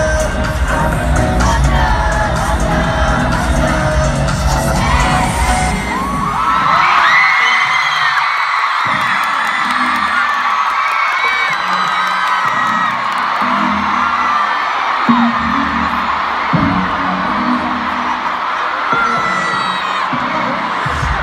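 Pop music with singing and a heavy bass beat over a stadium sound system, which breaks off about six seconds in; then a huge crowd screaming and cheering, with low bass pulses throbbing on and off beneath it.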